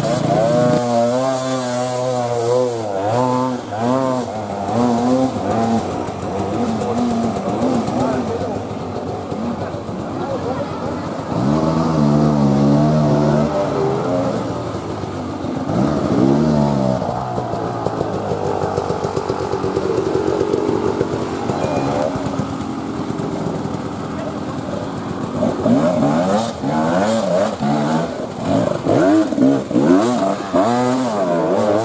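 Enduro dirt-bike engines revving in repeated bursts, the pitch swinging up and down as the riders work the throttle climbing a steep forest trail.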